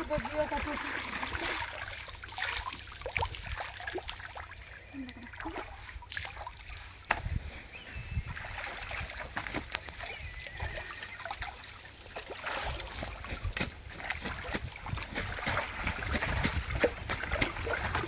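Water splashing and trickling as clothes are rinsed by hand in pond water. The cloth is dipped, swished and lifted so that water pours off it, with irregular small slaps and splashes throughout.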